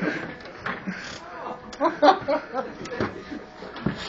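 Indistinct men's voices talking over one another, with some chuckling.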